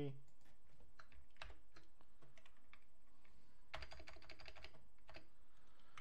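Typing on a computer keyboard: irregular key clicks as a web address is entered, with a quicker run of keystrokes about four seconds in.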